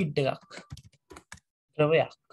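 Computer keyboard being typed on: a short run of quick, light key clicks as a word is entered.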